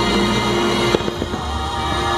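Fireworks show with its orchestral soundtrack music playing loudly over speakers. A sharp firework bang comes about halfway through, followed by a few smaller pops.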